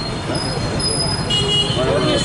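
Street traffic noise with a vehicle horn tooting briefly around the middle, and the voices of people standing close by.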